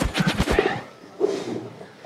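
A rapid series of sharp knocks, several per second, that dies away about half a second in. A short, softer rustle of noise follows.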